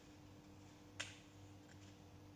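Near silence with a faint steady hum, broken by one sharp click about a second in.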